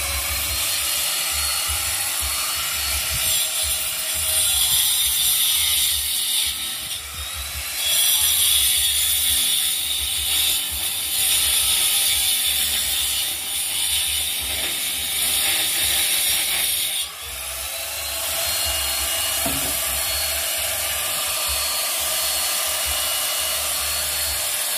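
Electric angle grinder with a cutting disc running continuously while it cuts a groove into a brick wall, its sound swelling and easing as the disc bites into the brick, with a brief dip about two-thirds of the way through.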